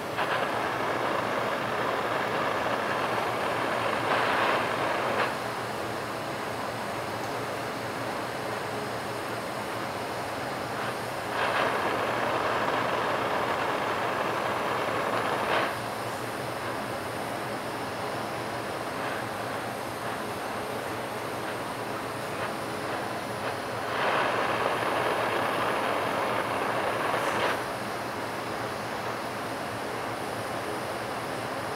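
A glassblower's bench torch running with a steady rushing flame noise, swelling louder for a few seconds three times as the flame works the tubing.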